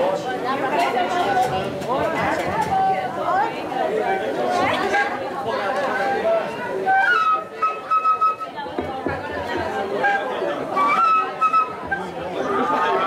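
Crowd chatter with pífanos (cane fifes) sounding a few held high notes, each stepping up in pitch, about seven seconds in and again near the end.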